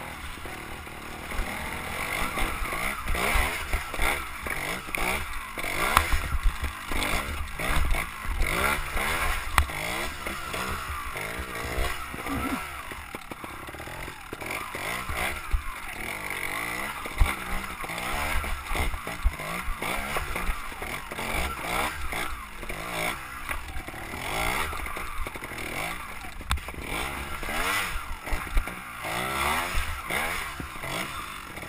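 Trials motorcycle engine running and revving unevenly as the bike is ridden over rough, rocky ground, heard close up from a helmet-mounted camera.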